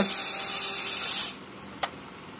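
The small electric motor of a WLtoys 16800 RC excavator's bucket drive runs steadily as the bucket moves, then stops about a second and a half in. A single sharp click follows.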